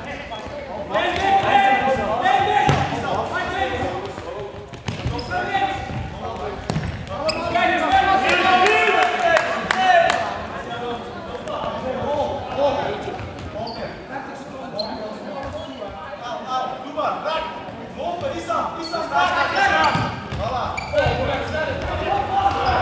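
Players' voices calling out in a large, echoing sports hall, mixed with the thuds of a futsal ball being kicked and bouncing on the wooden floor.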